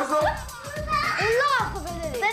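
Young children's excited, high-pitched voices, with a couple of long rising-and-falling cries about a second in, over background music.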